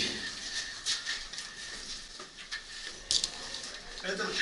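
Scattered light clicks and knocks from paintball players handling their markers and gear in a bare room, with a sharp double crack about three seconds in.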